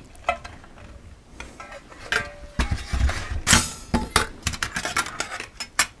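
Thin titanium panels and plate of a folding wood stove clinking and knocking against each other as they are handled and fitted into place: a run of light metallic clicks and taps, with a brief ring about two seconds in and the loudest knocks about three and a half seconds in.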